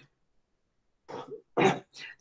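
A man clearing his throat and coughing: two short bursts, the second louder, starting about a second in after a silent pause.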